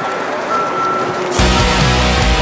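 A vehicle's reversing alarm beeping with a steady high tone, twice, over outdoor background noise; about one and a half seconds in, loud rock music with electric guitar and heavy bass suddenly cuts in and drowns it out.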